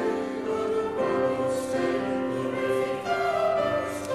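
A small mixed choir of men's and women's voices singing, with held notes that change about once a second.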